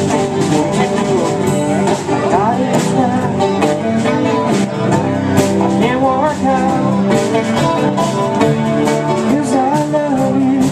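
Live band playing: electric guitar, bass guitar and drums with a steady beat, and a woman singing.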